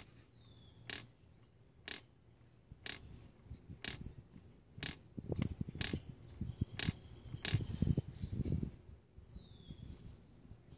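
Volvo 940 idle air control valve clicking faintly about once a second as the engine computer's test mode switches it on and off. Fainter irregular noises come in toward the middle.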